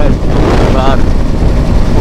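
Motorcycle riding at road speed: heavy wind rush buffeting the microphone over the engine's running, with a voice partly heard through it.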